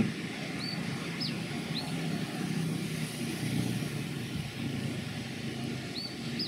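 Steady low rumble of city traffic, with three short high chirps between about half a second and two seconds in, and the same three chirps again at the very end.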